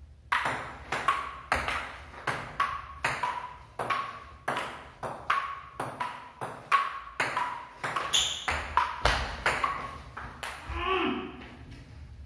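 A long table tennis rally: the celluloid ball clicking off the paddles and pinging on the wooden table, about three hits a second, ending a little before the last second with a short shout.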